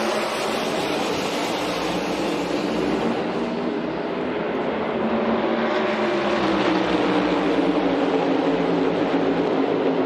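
A full field of NASCAR Cup Series stock cars at full throttle on the opening lap, their massed V8 engines merging into one loud, steady drone. Several engine tones slide up and down as cars pass.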